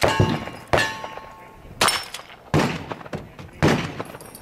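Five gunshots about a second apart at a cowboy action shooting stage, each followed by a short metallic ring from steel targets being hit.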